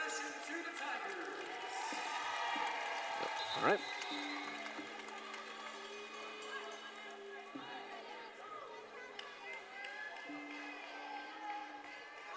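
Arena crowd murmur, joined about four seconds in by music over the public-address system: long held notes that shift to new pitches a few times.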